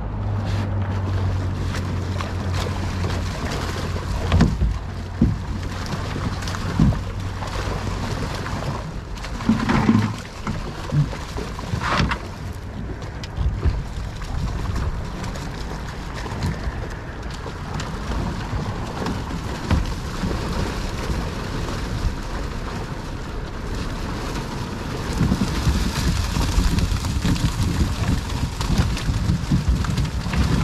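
Wind on the microphone and water lapping as a cast net is hauled in hand over hand, with a low hum in the first few seconds and scattered knocks. Near the end it grows louder and busier as the net comes up out of the water full of mullet, water streaming and dripping off it.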